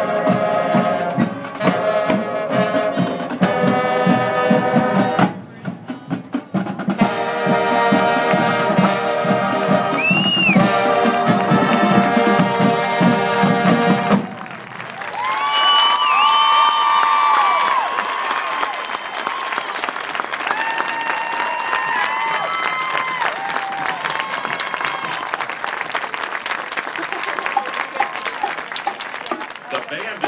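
High school marching band's brass and drums playing, the music stopping about halfway through. Crowd cheering and applause follow for the rest.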